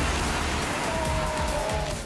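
Steady loud rushing roar of a huge breaking ocean wave, with background music underneath.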